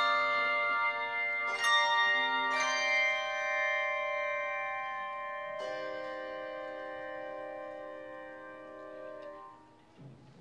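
Handbell choir playing the closing chords of a piece: several chords struck in the first few seconds, then a last chord a little past halfway, left to ring and fade away before the bells are stopped near the end.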